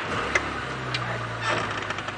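Open safari vehicle's engine running with a steady low hum, with a few light clicks and rattles over it.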